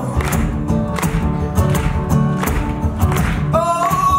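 A live band plays a song: acoustic guitar, bass guitar and electric guitar over a steady drum beat. A voice starts singing about three and a half seconds in.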